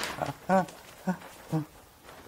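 A handful of short murmured vocal sounds from people in a room, single syllables like "mm" or a brief laugh, spaced about half a second apart and dying away in the last half second.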